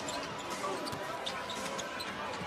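A basketball being dribbled on a hardwood court, over the steady murmur of an arena crowd.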